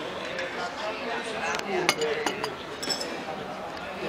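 A metal spoon and a china coffee cup and saucer clinking a few times, sharpest about two and three seconds in, with voices murmuring in the background.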